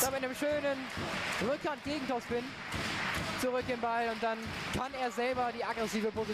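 Voices in a sports hall, with some held and some gliding in pitch, over the ball being struck back and forth during a table tennis rally.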